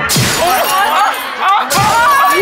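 Two comic crash sound effects that shatter like breaking glass, about a second and a half apart, dubbed in for blows to the head. A voice calls out between them.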